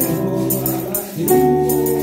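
Live church worship music: a Spanish-language chorus sung with held notes over keyboard accompaniment, with a brisk jingling percussion beat, dipping briefly about a second in.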